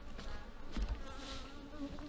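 A flying insect buzzing close by, with a wavering pitch that drops lower and steadier in the second half.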